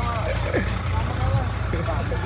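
Tractor diesel engine idling steadily, a low even throb.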